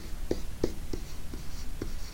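Stylus tapping and scratching on a tablet's writing surface while handwriting a few letters: about six short taps over a steady low hum.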